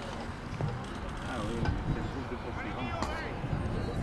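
Steady road and engine noise from a moving vehicle in a cycle race convoy, with wind on the microphone. Faint, indistinct voices come through about a second and a half in and again about three seconds in.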